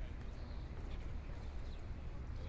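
Quiet outdoor ambience: a steady low rumble with faint, scattered light knocks.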